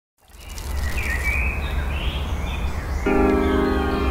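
Birds chirping over a steady low rumble, then background music comes in with a sustained chord about three seconds in.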